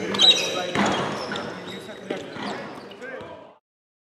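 Basketball practice in a large, echoing arena: background voices and a few basketball bounces on the hardwood. The sound fades out and cuts to silence near the end.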